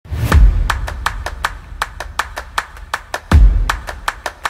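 Channel intro music sting: a fast, even run of sharp ticking clicks, about five a second, with two deep bass hits, one near the start and one just past three seconds in.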